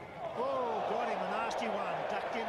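Cricket stadium crowd noise swelling about half a second in, with raised voices calling out over it: the crowd reacting to a fast bouncer striking the batsman.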